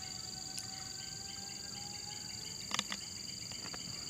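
Steady high-pitched drone of insects, with a couple of faint clicks from a plastic bottle being handled near the end.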